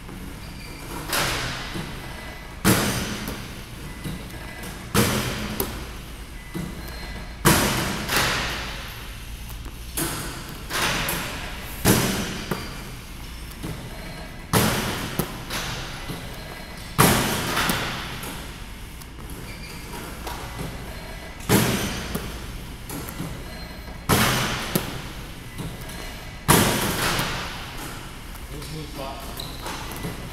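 Basketballs thudding in an echoing gym during a shooting drill with a rebounding machine: about a dozen sharp impacts, one every two to two and a half seconds, each with a ringing reverberant tail.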